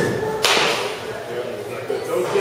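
A baseball bat striking a pitched ball in a batting cage: one sharp crack about half a second in, trailing off briefly.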